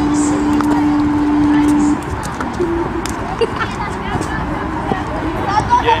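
A held low electronic tone from the broadcast's logo transition cuts off about two seconds in, leaving open-air football-pitch ambience with a player's shout of "Daniil!" near the end.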